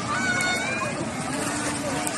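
Voices of people swimming in a river, children calling out, over a continuous wash of water and outdoor noise.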